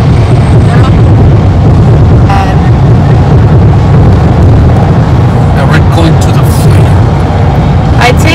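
Loud, steady rush of road and wind noise from a car driving at freeway speed, with a heavy low rumble. Faint voices come through it now and then.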